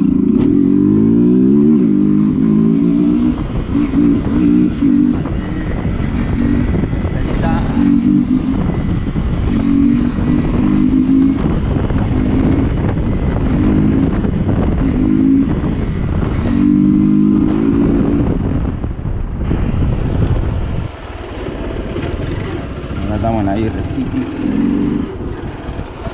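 Motorcycle engine running while being ridden, its pitch rising and falling again and again as the throttle is opened and eased off, with heavy wind noise on the microphone. It gets quieter about twenty seconds in.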